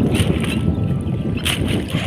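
Wind buffeting the microphone on an open boat, over a rumble of choppy water. Twice there is a brief light splash or drip as a wet fishing net is hauled in by hand over the side.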